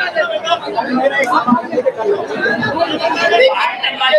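Several voices talking at once, speaking over one another in a loud, unbroken jumble of chatter.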